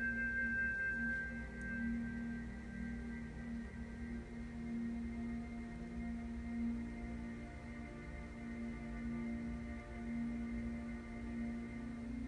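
Soft ambient background music of long held tones that shift slowly from one chord to the next.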